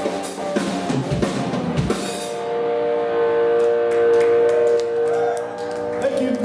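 Electric guitar and drum kit playing loud rock, with cymbal crashes and kick drum, until the drums stop about two and a half seconds in; a held electric guitar chord then rings on alone as the song ends.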